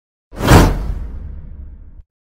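Whoosh sound effect of an animated subscribe-button intro. It comes in suddenly about a third of a second in, peaks at once, and fades away over a second and a half with a low rumble underneath.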